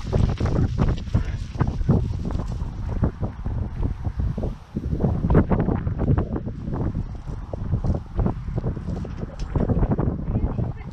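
Wind buffeting the microphone: a loud rumble that rises and falls in gusts.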